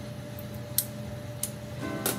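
Soft background music with steady held notes, under a couple of light clicks from a vegetable peeler working the edge of a bar of melt-and-pour soap.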